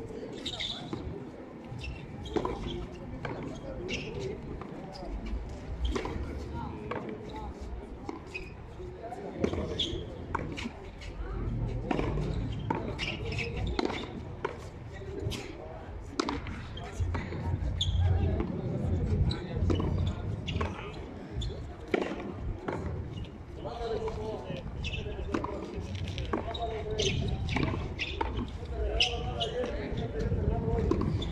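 Frontón a mano rally: the ball smacking repeatedly off players' bare hands, the wall and the concrete floor in sharp, irregularly spaced strikes, with voices in the background.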